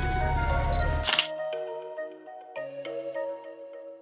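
Background music over street noise, then a single camera-shutter click about a second in. After the click the street noise drops out and the music carries on alone with sparse notes.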